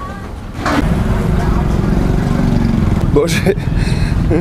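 A motor vehicle's engine running close by in street traffic, a steady low drone that starts about half a second in. A few words are spoken near the end.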